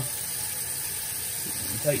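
Kitchen faucet running a steady stream of water into a sink already filled with water and leafy greens.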